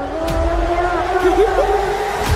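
Horror-trailer score and sound design: a deep, steady rumble under sustained, wavering mid-pitched tones that bend and slide upward late in the passage.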